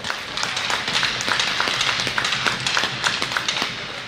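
Applause from a small crowd in an ice arena: many separate hand claps following one another.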